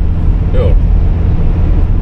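Steady low rumble of a car driving along at road speed, heard from inside the cabin: engine and road noise.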